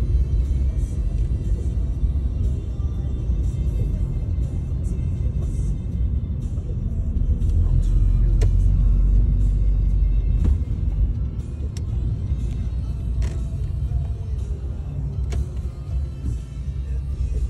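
Steady low road and engine rumble inside a moving car's cabin, with music playing over it.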